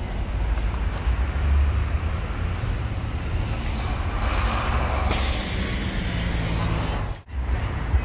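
City street traffic with a steady low rumble of passing vehicles. About five seconds in, a loud hiss lasts about two seconds, and the sound drops out for an instant near the end.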